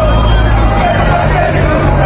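Football supporters' voices shouting and chanting over the low rumble of a bus engine passing close by.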